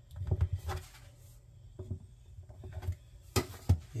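Metal bench scraper pressed down through a round of soft bread dough and knocking against the countertop: a few dull knocks in the first second, then two sharp taps close together near the end.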